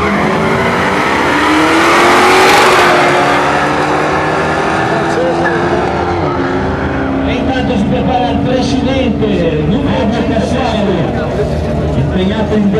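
Two drag-racing cars launching off the start line at full throttle, their engines rising in pitch as they pull away. The sound is loudest about two to three seconds in, then eases as the cars run off down the strip.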